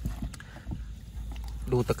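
Wet fish being shifted by hand in a plastic bin: a few light knocks and handling noise over a steady low rumble, then a man starts speaking near the end.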